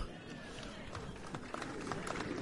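Faint murmur of a crowd in a room: many low, overlapping voices with no single voice standing out.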